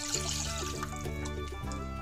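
Cold broth being poured from a glass jug into a pot of onion and garlic in butter, a trickling splash of liquid. Background music plays throughout and is the louder sound.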